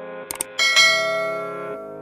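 Subscribe-button sound effect over steady background music: a quick double mouse click, then a bright notification-bell ding that rings out and fades.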